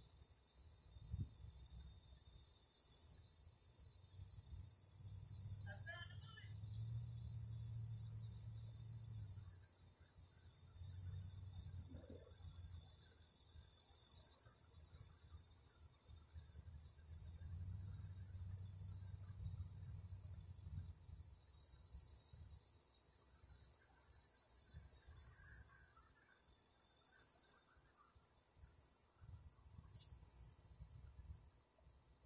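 Faint outdoor insect noise: a steady high-pitched drone with a higher chirping pulse every couple of seconds. Beneath it is a faint low rumble that swells and fades several times. No shots are fired.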